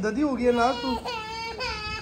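A toddler girl crying and whining in two drawn-out wails that waver in pitch. It is a protest cry at being spoon-fed: she wants to eat by herself.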